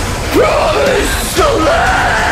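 A man's harsh metalcore screamed vocal: two screamed phrases, the first starting about a third of a second in and the second just before the halfway-and-a-half mark, over loud heavy-metal band music, recorded on a phone.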